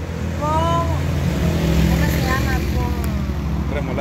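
Low rumble of a nearby motor vehicle's engine, swelling about half a second in and easing off near the end, with a few brief spoken words over it.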